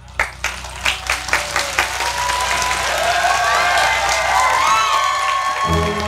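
Audience applause: a few scattered claps that build within about two seconds into sustained, dense applause, with voices cheering over it.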